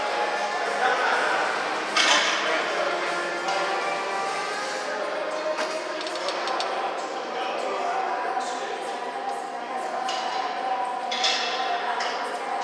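Background music with singing filling a large gym room, with a sharp metal clank from weight equipment about two seconds in and another near the end.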